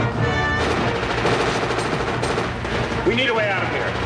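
Film action soundtrack: a rapid, dense run of crackling and banging effects over music, with a brief swooping tone about three seconds in.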